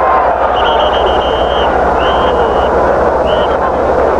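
Stadium crowd noise heard through the TV broadcast, with a referee's whistle blowing three times to end the play after the tackle. The first blast is the longest, about a second; the last is brief.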